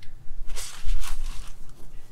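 Rustling and soft bumps of handling and movement inside a car cabin: two short rustles about half a second and a second in, over a low rumble.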